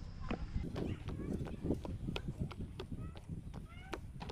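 Footsteps on the wooden planks of a rope suspension bridge: a run of sharp, hollow knocks, about three to four a second.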